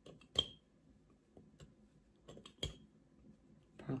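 A metal spoon clinking against a glass mason jar a few times while dried parsley flakes are measured in. The sharpest clink, with a short ring, comes about half a second in, and another just under three seconds in.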